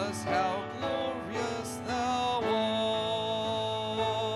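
A hymn sung by a church congregation, led by a man singing into a microphone, over instrumental accompaniment. The notes move in the first half, then one long note is held from about halfway to the end.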